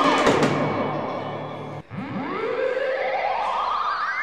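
Theremin playing swooping glides: a rise and fall, then after a brief break a long slow rise with a wavering vibrato. Low sustained notes sit underneath in the first half.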